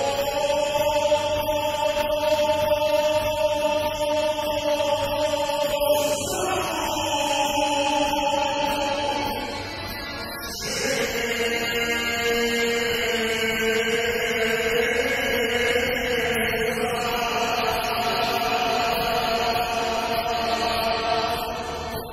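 A male singer holds long, slowly wavering notes of a Bosnian sevdalinka in a live concert hall. His voice slides down about six seconds in, breaks briefly around ten seconds, then carries on in another long held phrase.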